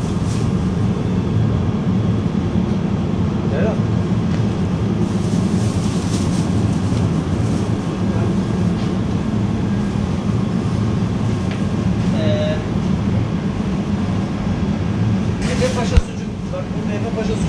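Steady low hum of open refrigerated supermarket display cases, with a constant background noise of fans and machinery.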